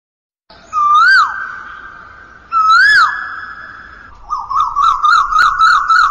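Whistled, bird-call-like logo intro sound: two long notes, each ending in a quick upward swoop and drop, then a fast warbling trill from about four seconds in.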